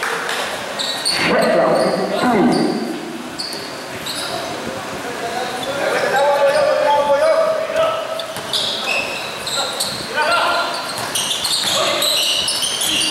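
Indoor basketball game: a basketball bouncing on the court among players' shouts and calls, echoing in a large gym, with scattered short high squeaks.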